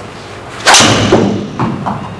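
TaylorMade M1 (2017) driver striking a golf ball with one sharp crack about two-thirds of a second in, the ball thudding into the simulator screen, then a couple of softer knocks. The strike is slightly low on the clubface.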